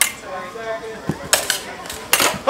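Smallsword blades clashing during a fencing exchange, sharp metallic clicks: one at the start, then three in quick succession in the last second.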